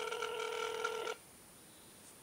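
Telephone ringback tone heard over a phone's speaker: one steady ring that cuts off suddenly about a second in, meaning the redialled call is ringing and not yet answered.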